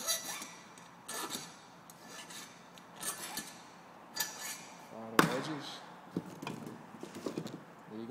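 Heavy-gauge wire being wrapped around a homemade metal jig with pliers: short metallic scraping strokes with a faint ring, about once a second. About five seconds in comes a sharp, loud snap, followed by a few small clicks.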